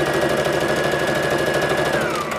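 Brother electric sewing machine stitching a seam through two layers of cotton fabric. It runs at a constant speed, with a fast, even needle rhythm and a motor whine held at one steady pitch.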